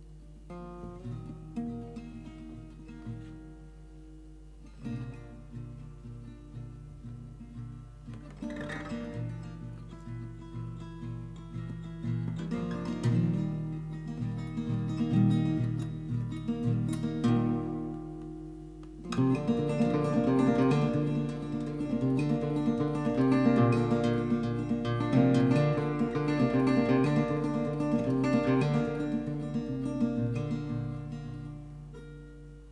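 Solo cutaway acoustic guitar playing an instrumental passage, starting soft and building, then turning suddenly louder and fuller about two-thirds of the way through.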